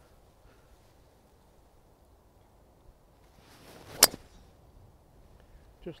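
A golf driver swung at a teed-up ball: a short swish of the downswing, then a single sharp crack as the clubface strikes the ball, about four seconds in.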